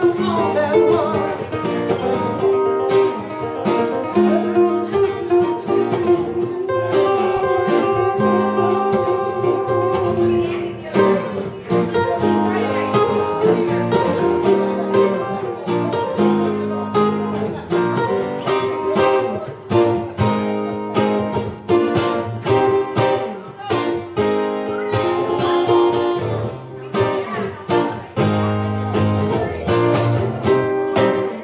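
Two acoustic guitars played live together, strumming and picking a steady rock rhythm.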